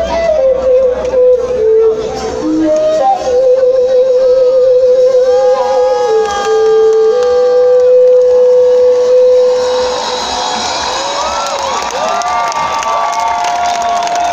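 A live band's song winding down on long held notes, one of them wavering, with the bass dropping out near the start. About ten seconds in, the crowd breaks into cheering and whoops.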